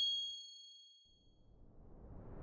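A bright bell-like ding from a video logo sting fades out over about the first second and a half. Near the end a whoosh starts swelling up.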